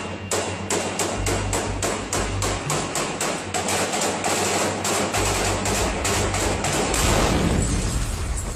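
Rapid rifle gunfire at close range, recorded on a mobile phone: sharp cracks at about four a second throughout, ending in a louder blast with a deep rumble near the end.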